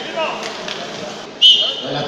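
A short, loud, high-pitched whistle blast about one and a half seconds in, over a murmur of voices.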